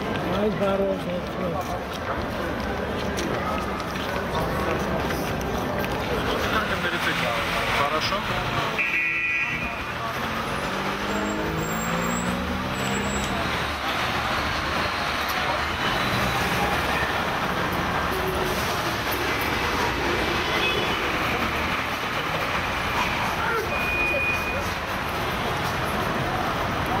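Busy street at night: steady traffic noise from passing cars, with people talking.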